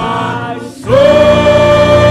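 Gospel praise team of several voices singing through microphones; about a second in they swell into a long held note.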